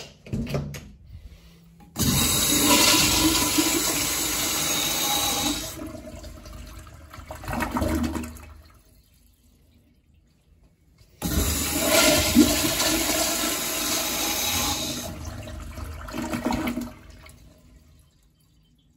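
Flushometer-valve toilet, a 1960s American Standard Afwall bowl, flushing twice. Each flush is a loud rush of water lasting about six seconds and ending in a short gurgling swell as the valve shuts off. The second flush begins a couple of seconds after the first ends.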